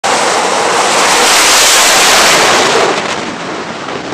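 EA-18G Growler's twin GE F414 turbofan engines at full power during a catapult launch off a carrier deck: a loud, even jet rush that is loudest around two seconds in and falls away in the last second as the jet climbs off.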